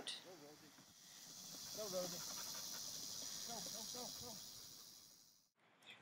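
Dogs panting hard in the heat, faint and steady. Faint distant voices underneath; the sound cuts off abruptly just after five seconds.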